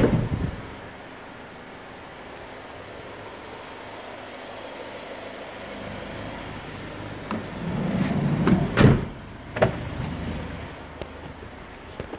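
Hyundai Starex van's sliding side door running along its track. The rumble of it sliding open fades out just after the start. Near nine seconds in it rolls shut with a rising rumble and slams with a sharp, loud latch, followed by a lighter click.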